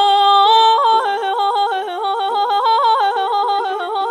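Female vocalist singing Persian classical avaz in Bayat-e Esfahan: a held note, then from about a second in a tahrir, quick yodel-like breaks in pitch repeating several times a second.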